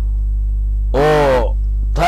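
A loud, steady low electrical hum under the recording. About a second in, a man's voice gives one drawn-out syllable lasting about half a second.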